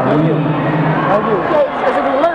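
Overlapping voices of several people talking at once, with no single clear speaker.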